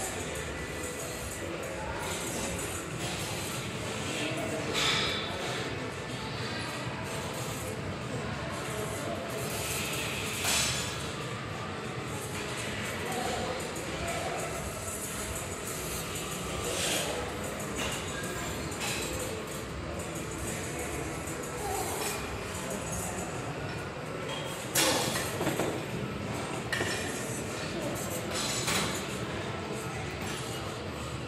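Busy gym ambience in a large hall: background voices and music, with occasional sharp metallic clinks of weights and machines.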